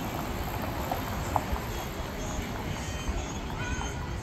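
City street ambience: a steady rush of traffic noise with a low rumble and a few short clicks, and a brief high voice-like sound near the end.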